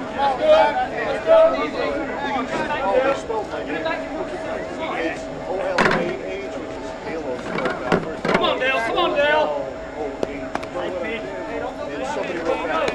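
Players and spectators talking and calling out at a softball field, overlapping voices with no clear words, broken by two sharp knocks about six and eight seconds in.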